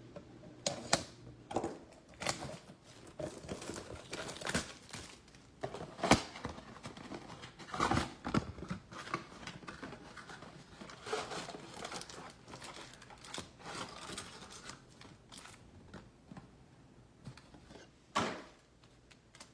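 A cardboard retail box of 2022 Bowman baseball cards being torn open by hand: irregular ripping and crinkling of cardboard and wrapping, with sharp rips loudest about six and eight seconds in.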